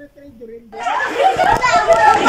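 A man's low voice, then from just under a second in, children's loud, high-pitched voices shouting over one another at play.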